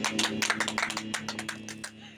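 Scattered hand clapping from a few people, quick irregular claps over a low steady hum from the amplified instruments left ringing, fading out near the end.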